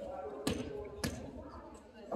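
A volleyball bouncing twice on a hardwood gym floor, about half a second apart, each bounce ringing in a large echoing hall, with voices in the background.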